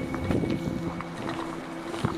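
Wind rumbling on the microphone over a low steady hum, with irregular short crunches and knocks as the camera is carried over debris-strewn ground.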